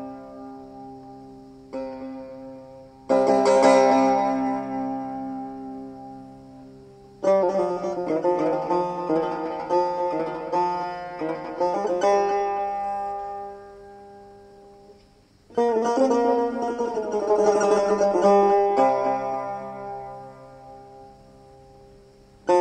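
Persian tar played solo in the Dashti mode: single plucked strokes left to ring and die away, then two passages of quick plucked notes, each fading out.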